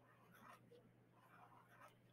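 Faint scratching of a permanent marker's felt tip drawing small circles on sketchbook paper, in a few short strokes.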